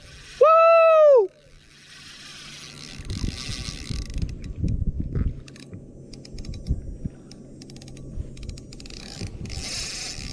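A loud, drawn-out whoop that falls in pitch at its end, then a spinning reel cranked against a hooked striped bass: the reel's gears whirring and clicking unevenly, with scattered low knocks.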